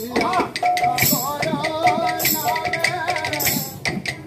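Odia kirtan group singing to barrel drums and jingling hand percussion, with a steady beat of strikes and a bright metallic clash about every second and a quarter.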